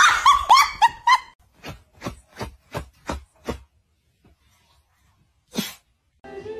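Small puppy yapping: a quick run of high, sharp yips in the first second, then a string of shorter barks about three a second that stops a little past halfway. A single short noise comes near the end.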